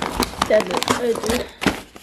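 Packaging being handled in a cardboard box: rustling and a few sharp crackles of plastic and card, with a short stretch of voice about halfway through.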